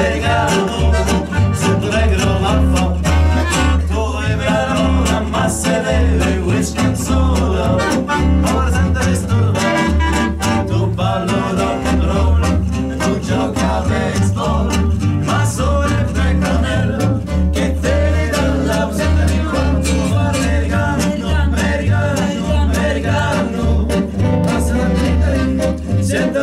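Live acoustic band playing a song: plucked double bass carrying a strong bass line under acoustic guitar, accordion and clarinet.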